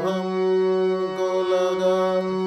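Harmonium playing a slow ghazal melody in long held notes over a steady low drone.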